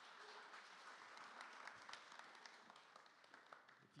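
A congregation applauding faintly, a patter of many hands clapping that eases off near the end.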